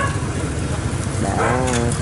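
Steady low rumble of street traffic, with a voice speaking Vietnamese from about a second in.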